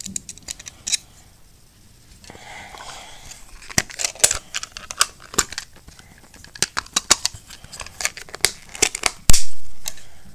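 Close handling of hard plastic GoPro mount parts: a string of sharp clicks and ticks as the pieces are fitted and screwed together, with some rustling a couple of seconds in. A loud thump about nine seconds in.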